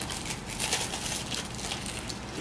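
Two people biting into and chewing burgers on crusty ciabatta bread: a quick run of crunches and crackles.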